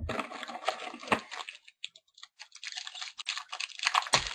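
Foil trading-card pack crinkling and rustling in the hands as it is handled and torn open, with quick crisp clicks; busiest in the first second and a half, then scattered, picking up again near the end.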